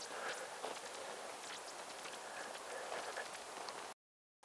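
Faint outdoor ambience: a steady hiss with light scattered ticks. It cuts out suddenly near the end.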